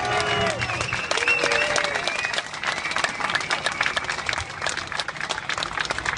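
Crowd applauding, with a few voices calling out in the first couple of seconds. The clapping dies down toward the end.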